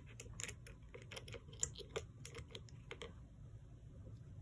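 Quick, irregular light clicks and taps of handling a small plastic case of endodontic rotary files while a file is picked out, stopping about three seconds in.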